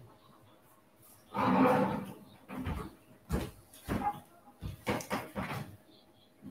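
A short loud burst of noise about a second and a half in, then a run of sharp knocks and bumps of the camera device being handled up close.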